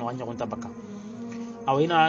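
A steady low buzzing drone fills a pause between a man's chanted phrases. His voice trails off in the first moment and comes back strongly on a held note near the end.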